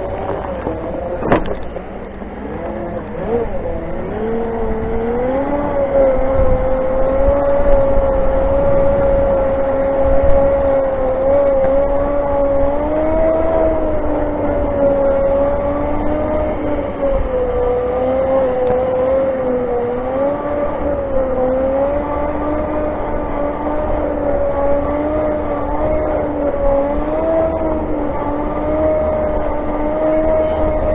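Segway's electric drive whining as it rides along, the pitch climbing over a few seconds as it picks up speed, then holding and wavering with small speed changes. A click comes just over a second in, over a low wind rumble on the microphone.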